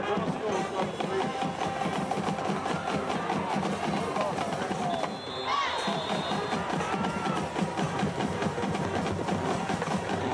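A school band's drums keep a fast rhythm from the stands, with crowd voices shouting and cheering over them. A brief high steady tone sounds about halfway through.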